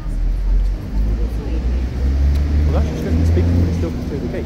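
Low rumble of a motor vehicle's engine running close by, its pitch shifting in steps, with faint voices behind it.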